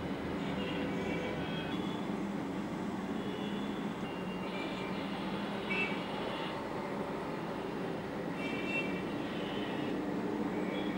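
A steady low mechanical hum, with thin higher-pitched whining tones that come and go several times.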